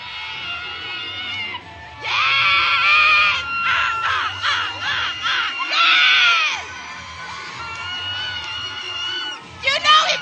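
Cheer routine music with a steady beat, under loud, high-pitched screams and shouts that swell and fall several times.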